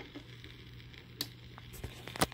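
Faint vinyl record surface noise over a steady low hum, with a few sharp pops: one at the start, one about a second in and a couple near the end, as the stylus runs in the groove ahead of the narration on the record's second side.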